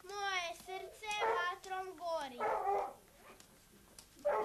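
A child's high-pitched voice in short phrases with gliding pitch, with two rougher, noisier bursts in the middle, then dropping away for the last second.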